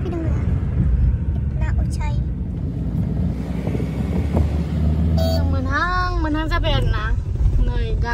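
Steady low road and engine rumble inside a moving car's cabin, with a voice over it about five seconds in.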